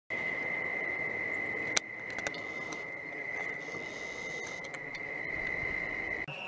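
A cricket trilling steadily on one high pitch, with a sharp click just under two seconds in.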